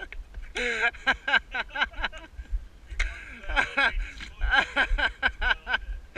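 A man laughing in two long runs of short, repeated bursts, over a low steady rumble of longboard wheels rolling on a rough tarmac lane.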